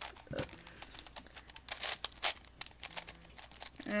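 Plastic V-Cube 7x7x7 puzzle being twisted by hand: an irregular run of clicks and clacks as its layers turn.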